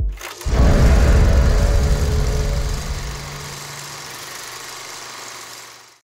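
End-credits sound effect: a short hit, then about half a second in a loud rumbling noise that slowly fades over about five seconds and cuts off suddenly.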